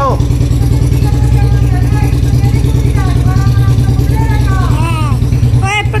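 Motorcycle engine running steadily with a fast, even low pulse.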